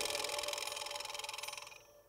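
The final chord of a live band dying away: a high cymbal-like shimmer and one held note fade out, ending near the end in silence.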